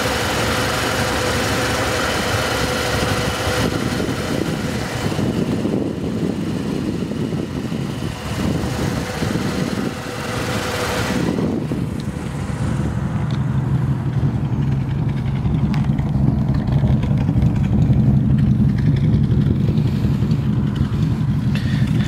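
1950 Ford flathead V8 idling steadily while it warms up from a cold start, its choke taken off early. About halfway through, the higher hiss and clatter fade and a deeper, steady low note takes over.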